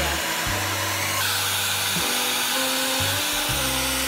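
Handheld hair dryer blowing steadily as hair is styled, with background music of sustained notes under it.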